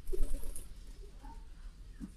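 A domestic pigeon cooing once, low and brief, just after the start.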